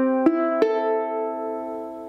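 Kala resonator ukulele's open strings plucked one at a time in standard G-C-E-A tuning, the sound of an in-tune uke: the last two strings sound about a quarter second and just over half a second in, and all four notes ring together and slowly fade.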